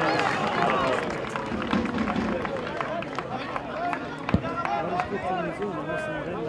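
Several voices of players and spectators calling and shouting over one another at a football pitch, with one sharp knock about four seconds in.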